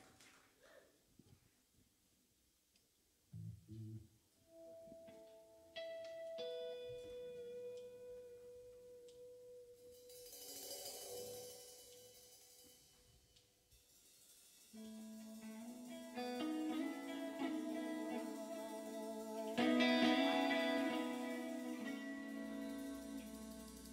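A live band starting a slow song: after a few quiet seconds and a soft knock, single guitar notes ring out one at a time, with a brief high shimmer about ten seconds in. The fuller band comes in around fifteen seconds, louder still near the end.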